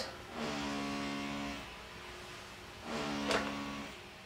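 Electric motor of a power tool from renovation works in the building, running with a steady hum for about a second, then again briefly near the end with a sharp click.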